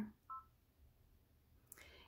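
Brother Dream Machine 2 embroidery machine's touchscreen giving a single short two-tone beep about a third of a second in, confirming a key press; otherwise near silence.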